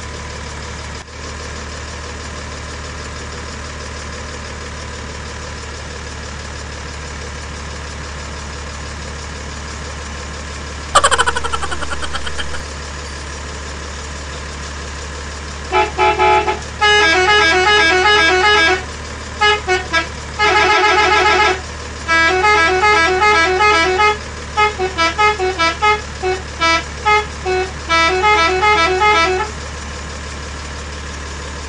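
A steady low hum with background noise throughout. About eleven seconds in comes a sudden loud sound whose pitch falls and rings on for over a second. From about sixteen seconds, a toy dump truck's electronic sound chip plays rapid stepped beeping tones in a repeating horn-like tune, in bursts with short gaps.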